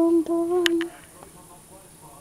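A voice humming two short, steady notes in the first second, followed by a sharp click near the end of the second note.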